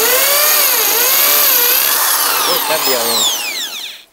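A Reaim 500 W corded hammer drill is running in hammer mode, boring into a masonry wall with a masonry bit. Its motor pitch dips and recovers under load. Near the end the trigger is released and the motor winds down with a falling whine.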